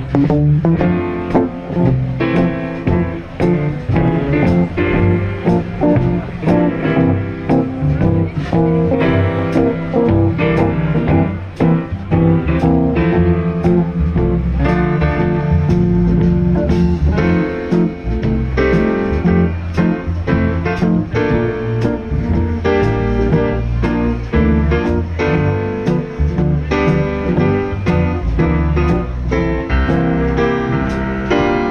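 Small jazz combo playing live: an archtop electric guitar leads over bass and drums, with piano also heard near the end.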